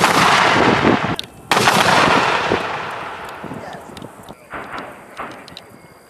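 Mortars firing: a loud blast at the start and a second one about a second and a half in, each rolling away slowly, then two fainter booms near the end.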